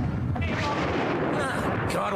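Sound effect of an artillery bombardment, a continuous low rumble of shelling. A man's voice comes in near the end.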